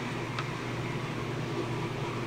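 Steady low room hum and hiss, with one faint light click about half a second in as a tiny plastic doll accessory is set down on a wooden table.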